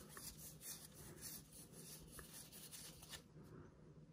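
Very faint rustle and slide of cardboard baseball cards being flipped through by hand, with a few soft ticks.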